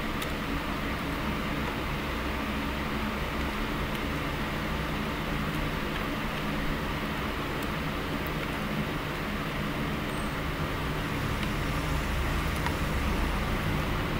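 Steady hum of an electric fan unit running: a low, even drone with a faint hiss above it and no distinct events.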